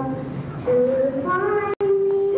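A girl singing, holding long sustained notes with a step down in pitch between them. The sound cuts out for an instant near the end.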